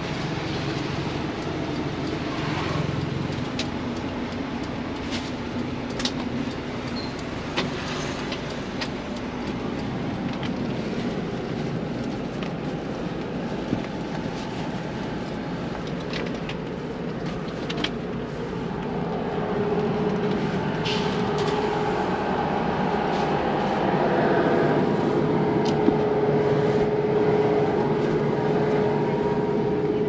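A bus engine running, heard from inside the bus, with a few scattered light clicks and knocks. A steady hum comes in and grows stronger about two-thirds of the way through.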